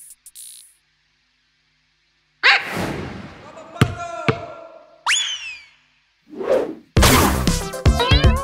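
Cartoon sound effects: a sudden hit with a trailing swish, two sharp clicks, a quick falling whistle about five seconds in and a short whoosh. Background music starts near the end.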